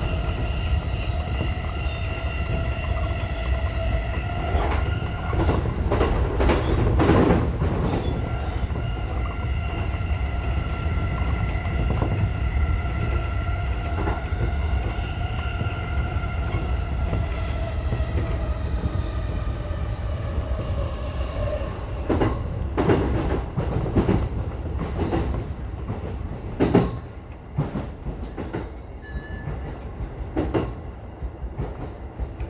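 JR E233-1000 series electric train heard from the front cab: a steady multi-tone whine from the traction motors over the low rumble of the wheels on rail. The whine sags in pitch and fades in the second half as the train brakes into a station. Runs of clicks from the wheels crossing rail joints and points come around six to eight seconds in and again from about 22 seconds, and the running noise drops off near the end.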